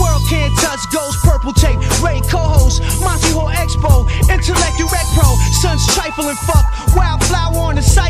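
Hip hop track: a heavy bass line under a steady drum beat, with a rapped vocal over it.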